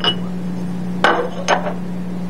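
Three short metallic clinks and knocks as the lid of a centrifuge rotor is gripped and lifted off: one at the start, one about a second in and another just after. A steady low hum runs underneath.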